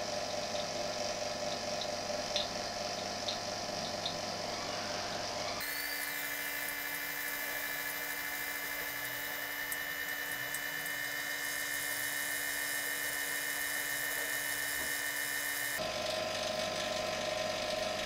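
Electric vacuum pump running steadily while hydrogen gas is drawn through the lines. Its sound changes abruptly about five and a half seconds in, turning thinner and higher-pitched, and switches back about sixteen seconds in.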